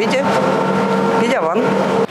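Steady, even hum of a trolleybus in motion, heard from inside the passenger cabin, with a few fixed tones held at one pitch throughout.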